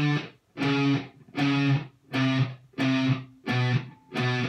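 Electric guitar played through an amp, picking single notes one at a time, about seven of them at roughly one every half second, stepping down the neck fret by fret from the 12th. This is a beginner one-finger-per-fret picking exercise played in reverse, each note picked cleanly and kept separate.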